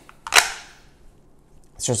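A single sharp click about half a second in as the Kiku Matsuda Mini Backup knife is pushed free of its sheath's retention lockup, a retention that the sheath's screws cannot tighten or loosen.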